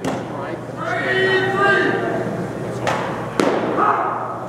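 Men's voices, one of them holding a long drawn-out call in the first half. Two short, sharp knocks about half a second apart come near the end.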